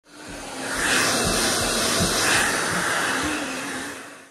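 Hair dryer blowing steadily: a loud, even rush of air with a faint motor hum, rising in over about the first second.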